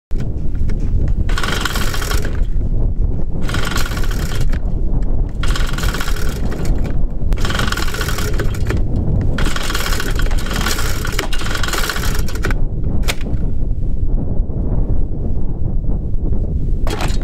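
Recoil starter of a Cifarelli mist blower's two-stroke engine being pulled about five times, one whirring pull every two seconds or so, over a steady low rumble. The engine does not catch, which the owner puts down most likely to a hardened diaphragm in its Walbro diaphragm carburetor. A few sharp clicks follow near the end.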